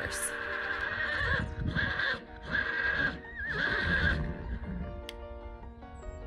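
A horse whinnying: one long call of about four seconds, broken into several pulses and wavering near its end, over background music.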